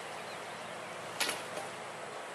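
A large plastic tarp swished and dropped, with one short sharp swish-slap about a second in, over steady outdoor background noise with faint bird chirps.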